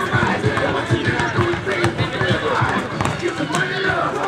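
Players and onlookers talking and calling out during a streetball game, with scattered sharp knocks of a basketball bouncing and footfalls on the asphalt court.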